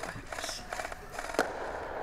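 Faint game audio in a large warehouse: scattered small crackling pops of distant airsoft gunfire, with one sharper click about one and a half seconds in.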